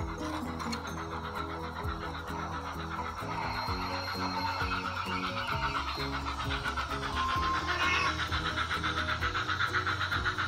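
Background music: a melody of stepped notes over a steady bass line, growing a little louder in the second half.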